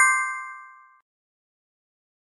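A bright, bell-like chime sound effect of several ringing tones, struck just before and fading out over about a second.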